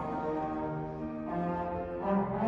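Trombones played together by young students: a slow line of about three held low notes, each around half a second long.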